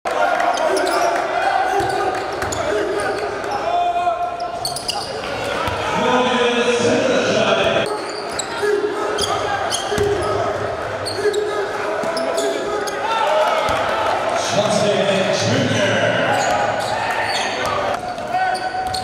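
Live basketball game sound in a gym: a ball bouncing on the hardwood floor among scattered knocks, with voices of players and spectators throughout.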